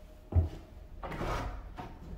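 An old wooden door being pulled open: a sharp thump about a third of a second in as it comes free, then a scraping, rubbing noise about a second in as it swings open.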